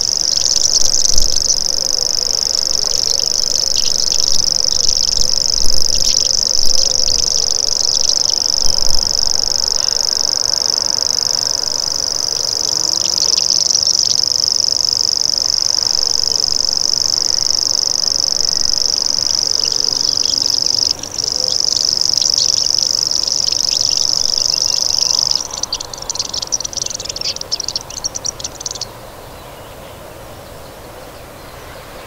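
Common grasshopper warbler reeling: a long, unbroken, high-pitched insect-like trill with one brief break about two-thirds of the way through. Near the end the reel stops and gives way to a few seconds of scattered high notes.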